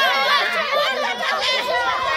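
A crowd of women shouting protest slogans together, many high voices overlapping without a pause.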